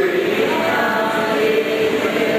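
Male voices chanting a Hindu devotional chant together, in long held notes that shift slowly in pitch without a pause.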